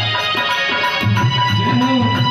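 Devotional instrumental music: an electronic keyboard holds sustained high notes over a dholak's regular deep drum strokes.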